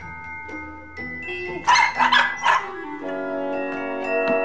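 A dog barks three times in quick succession over background music with bell-like tones.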